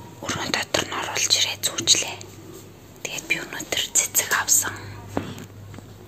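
A person whispering in two irregular spells, hissy and without clear voiced tones.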